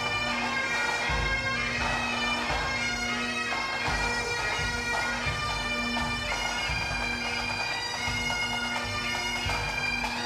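A pipe band of Great Highland bagpipes plays a marching tune over the steady drone, with drum beats underneath.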